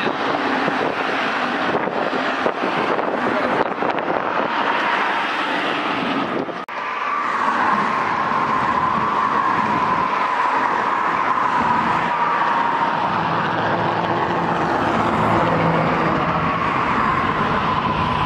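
Freight rail traffic in a yard: cars and CN GE Dash 8 locomotives rolling over the tracks, a steady loud rumble of wheels on rail. After a brief dropout about six and a half seconds in, a steady high ringing tone runs on above the rumble.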